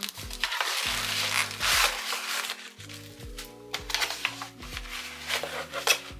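Stiff cardboard and paper packaging crinkling and tearing as it is opened, loudest in the first two seconds, then shorter scrapes near the end as a boxed phone slides out of the cardboard sleeve. Background music plays throughout.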